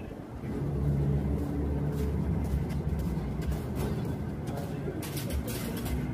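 A bus's diesel engine running steadily, a low even hum that rises in level about half a second in, with a few faint sharp clicks over it.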